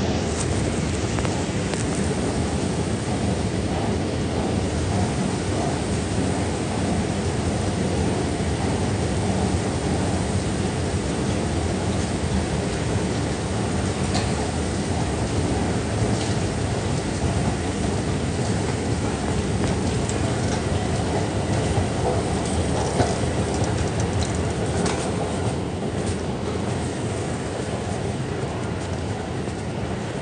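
Steady rumbling machine noise of a deep subway station, heard while riding its long escalator down, with a few faint clicks. It eases slightly near the end.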